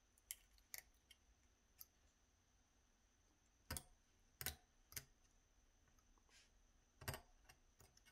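A needle file on a small cast-metal model part: a handful of faint, short scrapes and clicks, scattered irregularly through near silence, as the top of the part is smoothed.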